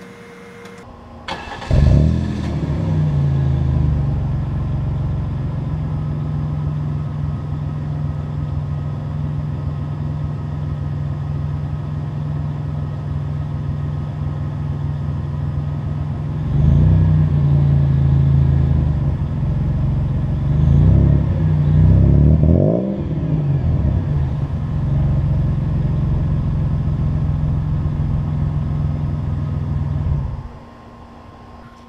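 Van engine cranking and catching a little under two seconds in, then idling through a Cherry Bomb glass-pack muffler. It revs up once about halfway through and blips twice a few seconds later, then settles back to idle.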